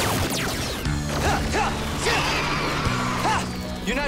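Fight-scene sound effects over an action music score: a crash near the start, then further hits and whooshing sweeps.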